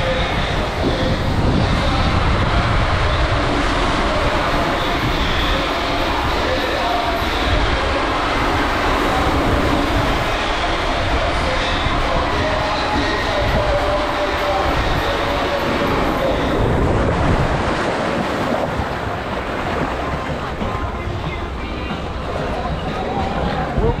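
Rushing water and the rumble of a raft tube sliding down an enclosed plastic waterslide tube, a steady echoing roar inside the tube.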